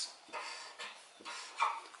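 Felt-tip marker strokes scratching and squeaking on paper, a few short strokes in a row.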